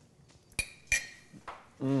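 A metal fork clinking twice against a dish, two sharp ringing taps about a third of a second apart, followed by a faint tick.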